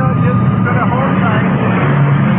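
Loud aircraft engine noise drowning out a faint man's voice on a telephone line, the airport noise the call is about, heard through the narrow sound of an AM radio broadcast.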